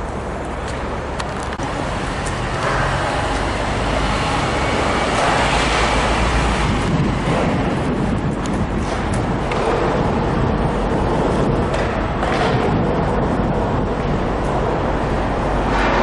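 Steady city traffic noise: a continuous rumble and hiss of passing motor vehicles, growing louder a few seconds in.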